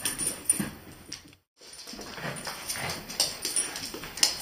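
Two dogs play-fighting over a toy: irregular scuffling and scrabbling with short dog vocal sounds mixed in, broken by a brief gap about one and a half seconds in.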